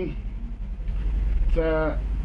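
A man's voice, a short held sound near the end, over a steady low hum.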